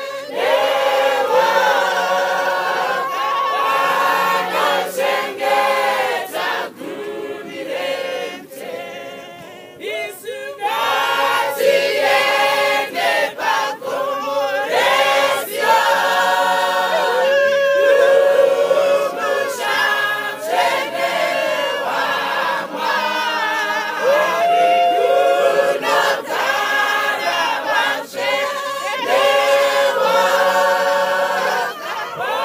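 Mixed church choir of women's and men's voices singing a Shona hymn a cappella in harmony, with a softer passage about seven to ten seconds in.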